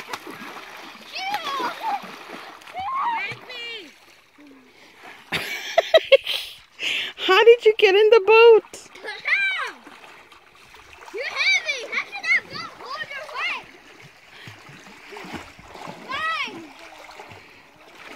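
Water splashing with children's high-pitched calls and squeals, including a few sharp splashes around the middle.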